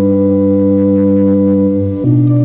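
Organ music: a long held chord that moves to a new chord near the end.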